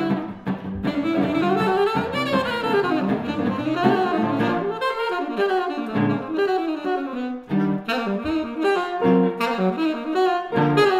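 Saxophone playing a jazz line of quickly changing notes over archtop guitar chords, in a live small-group performance.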